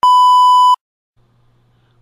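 A single steady electronic beep, about three-quarters of a second long, that starts and cuts off abruptly.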